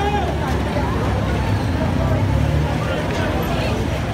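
A vehicle's engine running close by, its low rumble growing louder for a second or so in the middle, under the chatter of a crowd.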